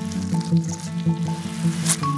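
Wet slurping and sucking through a drinking straw, ending in one louder slurp near the end, over background music of plucked notes.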